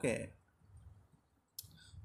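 A single sharp click, about one and a half seconds in, from a finger tapping the phone's touchscreen as the on-screen drawing is cleared; around it, near silence.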